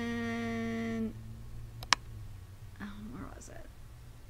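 A woman's drawn-out, level-pitched "nah" for about the first second, then a single sharp click just before the two-second mark and some faint muttering.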